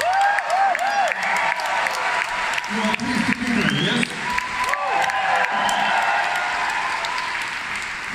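Concert hall audience applauding, dense clapping with cheers and whistles gliding over it at the end of a song.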